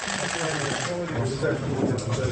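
Room sound at an official handshake photo-op: several voices talking at once over rapid, repeated clicking, like press camera shutters firing.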